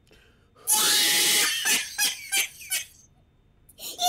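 A person's loud scream, starting suddenly about half a second in and lasting almost a second, followed by several short broken bursts of voice.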